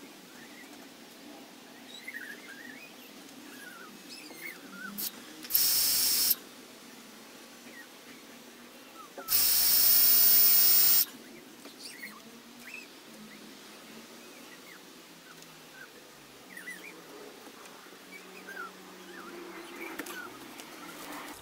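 Cordless drill run against the timber frame post in two bursts, a short one about five and a half seconds in and a longer one of under two seconds near the middle, each a loud, high-pitched whir. Small birds chirp faintly throughout.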